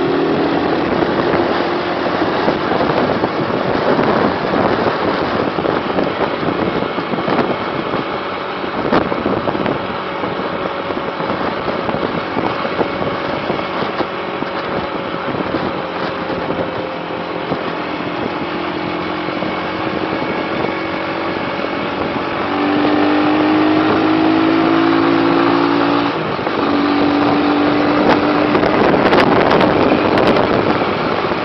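Vehicle engine running while driving along an open road, mixed with wind and road noise, its pitch shifting with the throttle. It grows louder about two-thirds of the way in, with a brief dip in engine note a few seconds before the end.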